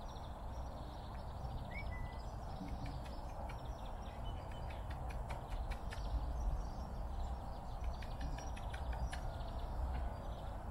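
Outdoor waterside ambience: a steady low rumble with faint bird calls and short chirps, and scattered short clicks.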